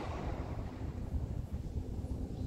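Low, steady rumbling noise, typical of wind buffeting the microphone, with no distinct strikes or footfalls.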